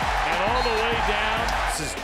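Background music with a steady bass beat under game-broadcast sound: a stadium crowd and a voice calling out.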